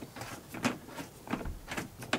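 Jaw-grip clamp of a folding hard tonneau cover being seated on the truck bed rail and hand-tightened, giving a few irregular clicks and scrapes of plastic and metal.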